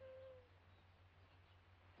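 Near silence on an old film soundtrack: a steady low hum, with a faint held tone that fades out about half a second in.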